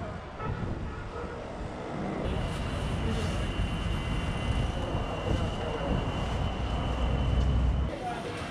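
Busy ambience with voices in the background. About two seconds in it changes to a steady high-pitched whine over a low machine rumble, which grows louder near the end and stops abruptly.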